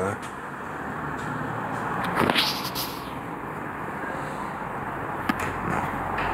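Steady hum of distant city road traffic, with one louder whoosh about two seconds in and a short click a little after five seconds.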